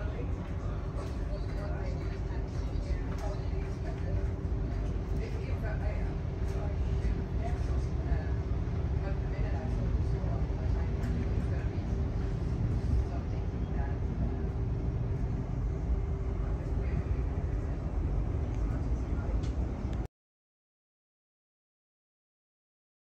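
Interior of a Great Northern electric train pulling out and running: a steady low rumble of the wheels on the track with a constant hum and scattered light clicks. It cuts off suddenly near the end.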